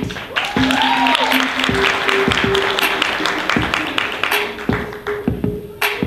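Audience applause over walk-on music with a steady beat and held notes. The applause dies away after about four seconds while the music plays on.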